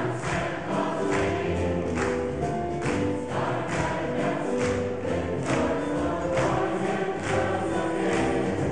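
Large mixed choir singing in harmony, with a steady beat of bright strokes about twice a second.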